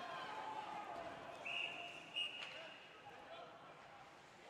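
A referee's whistle blown once, a steady high tone lasting about a second, stopping play. It is heard over ice rink ambience with faint voices and a sharp knock just after.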